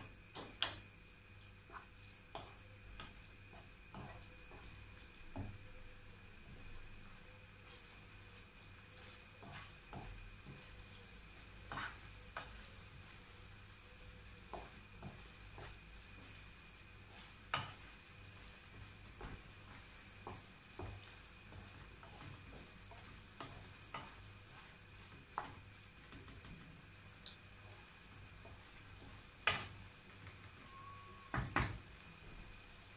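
Wooden spoon stirring beans and vegetables in tomato sauce in a granite-coated frying pan, with irregular light knocks of the spoon against the pan over a faint sizzle.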